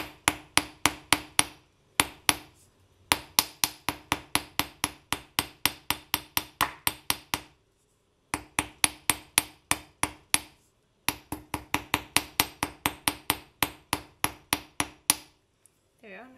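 Small jeweller's hammer tapping wire on a steel bench block that sits on a rubber pad, about four quick blows a second in runs with short pauses, each blow with a short metallic ring. The wire is being texture-hammered to give it a hammered, scratched finish.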